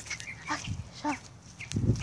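A dog barking a few short times, with low bumps of the phone being handled as it is carried.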